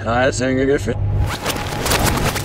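A man's voice shouts briefly. About a second in, a rapid run of sharp cracks begins: automatic gunfire, with bullets striking the ground.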